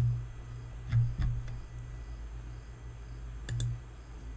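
Computer mouse clicking a few times, about three clicks around a second in and a quick double click near the end, over a steady low electrical hum.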